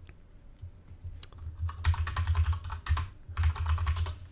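Typing on a computer keyboard: a single keystroke, then two quick runs of keystrokes, the second near the end, as a search term is entered.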